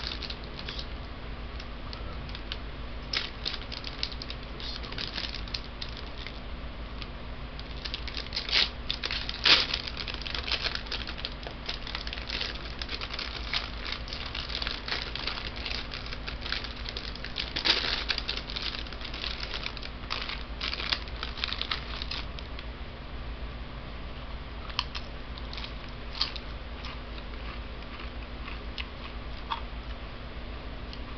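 A foil Doritos chip bag being handled, crinkling and rustling in irregular bursts that are busiest through the middle, with a couple of louder crackles, over a steady low hum.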